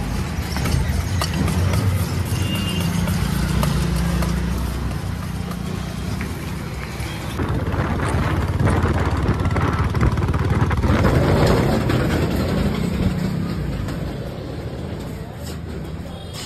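Street and traffic noise, then from about halfway a Royal Enfield Bullet's single-cylinder engine running as the motorcycle rides along a road. The bike has had its silencer changed.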